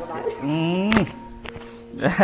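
A man's drawn-out voiced sound rising in pitch, cut off about a second in by a sharp thunk of fingers knocking the clip-on lapel microphone, with a fainter knock half a second later.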